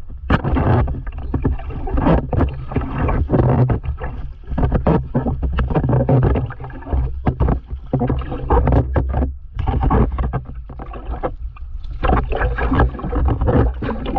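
Paddle strokes in sea water beside a stand-up paddleboard: irregular splashes and sloshes close to the microphone, over a steady low rumble.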